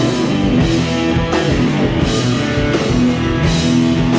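Live blues-rock band playing an instrumental passage: electric guitars over bass and a drum kit with ringing cymbals.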